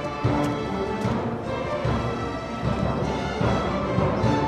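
Student string orchestra playing a piece, with held chords sounding over a busy low part.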